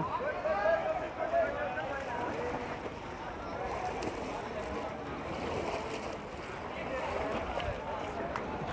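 Swimmers splashing through the water in a breaststroke race at an outdoor pool, with the hubbub of spectators' voices underneath, clearest in the first couple of seconds.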